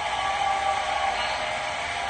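Studio audience applauding and cheering as a live song performance ends, a steady wash of crowd noise.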